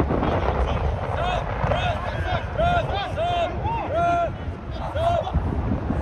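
Players' voices shouting short calls across a soccer pitch, a run of about ten brief raised calls between about one and five seconds in, over a low rumble of wind on the microphone.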